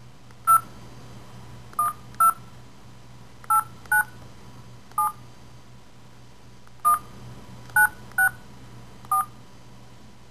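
Touch-tone telephone keypad being dialed: ten short key-press tones at an uneven typing pace, each a two-note beep, over a faint low hum.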